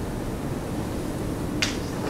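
Chalk striking and scraping on a blackboard, one short sharp stroke about one and a half seconds in, over a steady low room hum.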